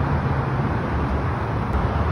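Steady low rumble of road traffic, constant and without breaks.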